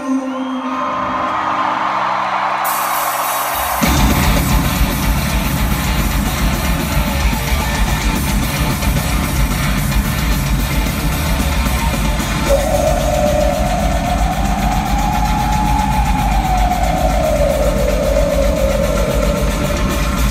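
Metal band playing live in an arena, heard from the crowd with hall reverberation. It opens on a held note, cymbals come in about three seconds in and the full band with guitars and drums about a second later, and in the second half a melodic line rises and then falls over the steady heavy playing.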